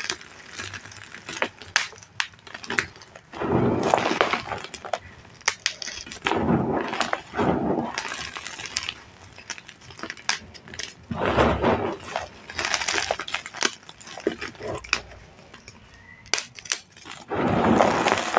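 Dyed reformed gym chalk (cornstarch-paste chalk) crunching and crumbling as handfuls of chunks are squeezed and broken apart, in bursts a few seconds apart with sharp cracks and falling grit between.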